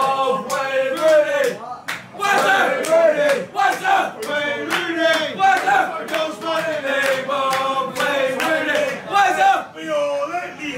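A group of male football supporters singing a loud, shouted chant together in a packed pub, with frequent sharp smacks cutting through it.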